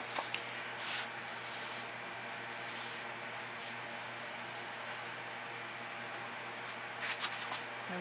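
Steady background hiss of an outdoor work area, with a few faint clicks and rustles from paint and tools being handled: a couple near the start and a small cluster shortly before the end.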